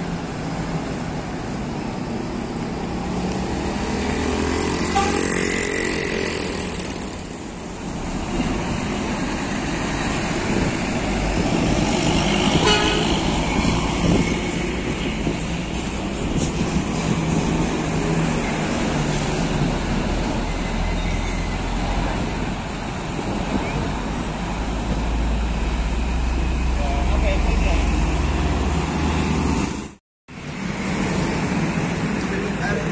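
Busy road traffic, with buses and trucks driving past. A vehicle horn sounds about four to six seconds in, and a deep engine rumble from a heavy vehicle builds over the last few seconds.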